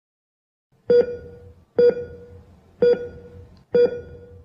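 Heart-rate monitor beeping four times, about one beep a second, each a short mid-pitched tone that fades away.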